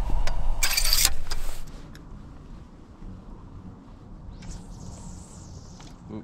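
A short, loud burst of splashing water as a steelhead is netted beside the boat, about a second in. The sound then drops to a quiet, steady outdoor background, with a faint hiss near the end.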